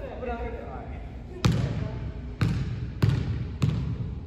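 A basketball bouncing on a hardwood gym floor four times, starting about halfway in, the last three bounces coming quicker than the first two. Each bounce is a sharp thud with a short ring in the gym.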